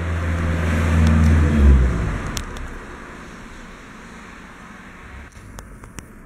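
A low mechanical rumble that dies away about two seconds in, leaving a quieter background with a few faint clicks near the end.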